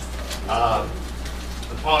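Speech: a man's voice holds a single drawn-out syllable about half a second in, over a steady low hum.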